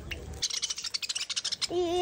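Budgerigars chattering: a quick run of short, high chirps and clicks. A person's voice starts near the end.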